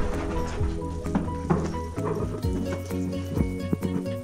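Background music with a steady beat, over a dog barking a few short times as it waits to be fed.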